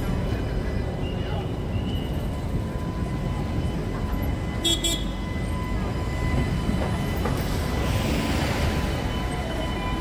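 An Istanbul city tram running right alongside, a low rumble with faint steady whining tones. A brief pulsed beep sounds about five seconds in, and a hissing swell comes near the end.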